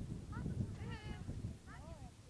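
A dog whining in three short rising-and-falling cries, the middle one the longest, over a low rumble.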